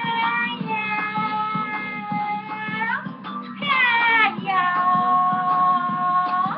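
A voice singing over a music backing track. It holds a long note for about three seconds, slides down, then holds a second long note.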